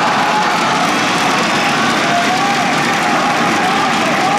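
Gymnasium crowd noise: a steady din of many voices calling and cheering, mixed with clapping from the team benches.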